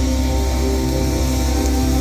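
Live rock band's amplified electric guitars and bass holding long, sustained chords at loud volume, with no drum beat.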